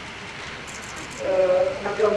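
A woman speaking into a microphone. A pause of about a second with only steady background hiss, then her speech resumes.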